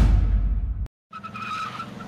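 A deep booming impact sound effect that rings out and fades, cut off abruptly just under a second in. After a brief silence a quieter, steady background with a held high tone begins.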